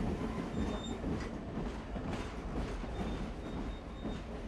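Steady low rumble of a train in motion, with faint rattling and a thin high squeal now and then.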